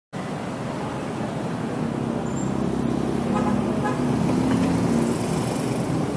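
Road traffic noise from scooters, motorcycles and cars moving together in dense traffic, heard from among them, over a steady engine hum. It grows slowly louder.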